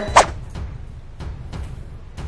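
A short whoosh just after the start, then a low, uneven rumble of a heavy truck passing by, strong enough to shake the room and be taken for an earth tremor.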